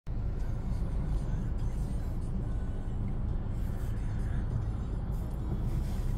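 Steady low rumble of engine and road noise heard inside a car's cabin as it creeps along in backed-up freeway traffic, with faint music in the background.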